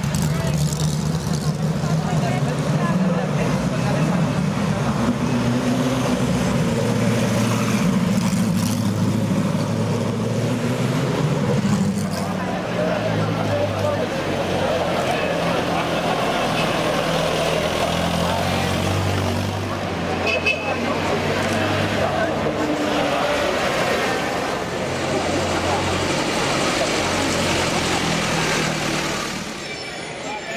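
Engines of vintage rally cars running at low speed as they pass close by, a steady low hum, with the chatter of a crowd of onlookers over it.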